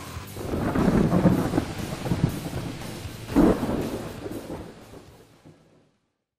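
Thunderstorm sound effect: rumbling thunder over rain, with a sharp crack of thunder about three and a half seconds in, then fading out.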